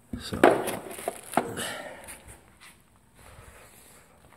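Handling noise from a thin metal RC roll cage part: a few sharp knocks and rustles in the first second and a half, then faint rustling.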